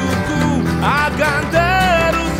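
Live band music: a man singing over acoustic guitar, with a steady bass line underneath. His held, wavering sung line comes in about a second in.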